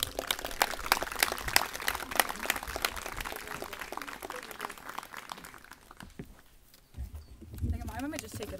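A small audience applauding, the clapping thinning out and dying away about five seconds in. Near the end, a low rumble as the microphone stand is handled.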